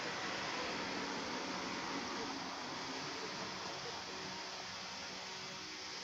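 Steady outdoor background noise, an even hiss with a faint low hum and no distinct events.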